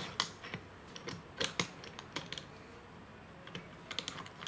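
Small, irregular metallic clicks and taps as the lid clamp of a rock tumbler barrel is fitted and tightened by hand, its nut and threaded rod worked through the bracket. A little cluster of clicks comes about a second and a half in.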